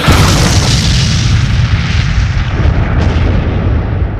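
Cartoon explosion sound effect of an energy beam striking the ground: a sudden boom followed by a sustained deep rumble.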